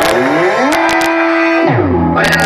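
Music played loud through a car-trunk speaker wall in a filtered break: the highs are cut away, a synth tone with overtones slides up, holds, then drops low into the bass near the end, with a few sharp hits in the middle.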